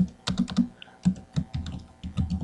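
Computer keyboard being typed on: an irregular run of key clicks as a short line of code is entered.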